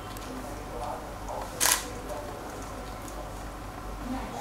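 A camera shutter clicks once, sharp and brief, about a second and a half in, over low background murmur.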